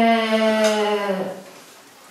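A person's drawn-out hesitation vowel, a held 'ehhh' on one steady pitch, lasting just over a second and trailing off.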